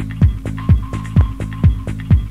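Electronic dance music from a 1998 club DJ set: a steady four-on-the-floor kick drum, about two beats a second, over a held bass line, with a higher synth note coming and going.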